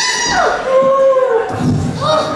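Wordless human voices making long, drawn-out pitched calls that hold a tone and then glide down at the end, two pitches sounding together for part of the time. A low rumble of noise comes in near the end.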